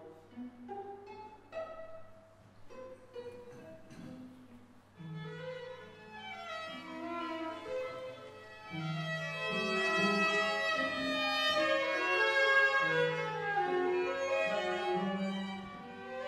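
String quartet of two violins, viola and cello playing: a few short, separate notes at first, then from about five seconds sustained bowed lines come in and build into a fuller, louder passage.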